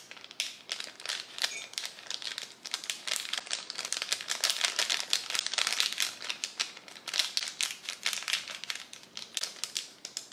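Paper powder sachet crinkling as it is squeezed and shaken to tip powder into a glass mug of water: a dense run of small crackles, loudest in the middle.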